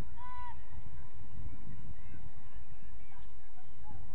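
Geese honking: one clear, short rising-and-falling honk just after the start and a fainter one near the end, over a steady low rumble.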